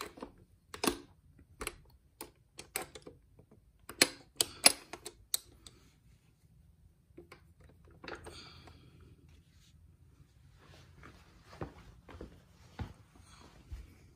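Sharp metal clicks and knocks from transmission parts being wiggled by hand to seat them on a locating pin, about a dozen in quick succession over the first five seconds, then fainter scraping with a few more clicks near the end.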